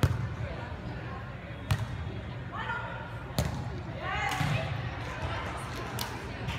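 Hands striking a volleyball: three sharp slaps about one and a half to two seconds apart, ringing in a large hall. Players' voices call out between the hits.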